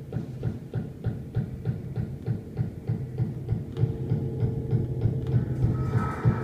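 Experimental improvised ensemble music built on a low throbbing pulse of about three to four beats a second. A steady held tone joins about two-thirds of the way in, and higher held tones enter near the end.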